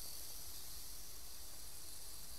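A rain stick tipped on end, its filling trickling down inside it in a steady, even high hiss.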